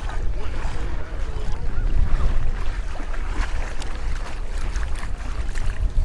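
Feet wading through ankle-deep seawater over sand, with wind buffeting the microphone as a steady low rumble.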